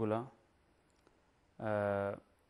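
A man's voice: a word trails off, then a short near-silent pause with a faint click, then one held vowel sound at a steady pitch.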